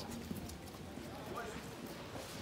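Voices of people talking in the background, with a few sharp irregular knocks in the first half second like footsteps on hard ground.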